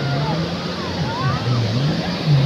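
Jet ski engines running in the shallow surf, their low drone wavering up and down with the throttle, over the wash of waves and the chatter of a beach crowd.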